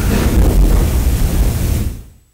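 Loud rushing noise with a low rumble, typical of a microphone being handled or buffeted, fading away near the end.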